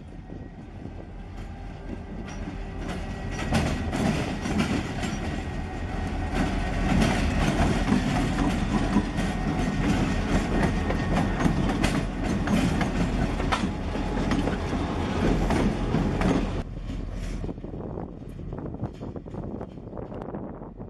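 Two CSX diesel locomotives passing close by, engines running, with wheels clicking over the rails. The sound builds about three and a half seconds in and drops off sharply near the end.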